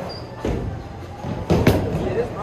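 Bowling ball thudding onto the wooden lane and rolling, then a loud clatter about one and a half seconds in, typical of the ball striking the pins. Music plays underneath.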